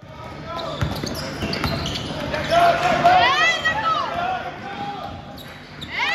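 Basketball bouncing on a gym court with sharp, scattered knocks, and voices calling out across the hall.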